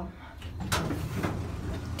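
Elevator car doors sliding along their track, with a sharp clunk about two thirds of a second in, over the low hum of the car.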